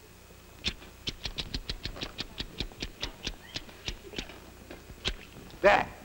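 A rapid run of sharp clicks, slowing and thinning toward the end, made with the mouth to imitate pool balls clicking against each other on a mimed shot. A short vocal exclamation follows near the end.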